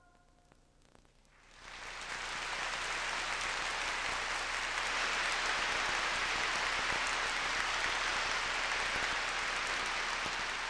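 After about a second and a half of near silence, an audience breaks into applause that swells and then holds steady.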